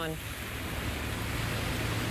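Steady street traffic noise from the reporter's outdoor microphone: an even hiss with a low rumble underneath, on wet pavement.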